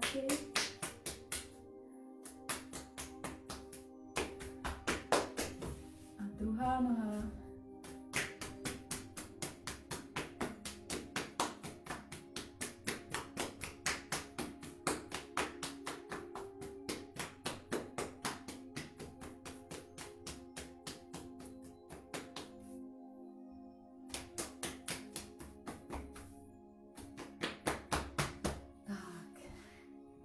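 Hands tapping briskly and rhythmically on the body, on the legs and feet, about four taps a second, in runs with a few short pauses.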